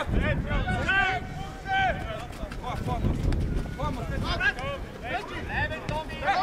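Voices calling and shouting in short bursts across a football pitch, over a steady low rumble of wind on the microphone.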